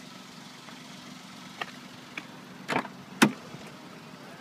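Peugeot 107's 1.0-litre three-cylinder engine idling with a steady low hum. A few light clicks and knocks come over it; the loudest is a sharp knock about three quarters of the way in.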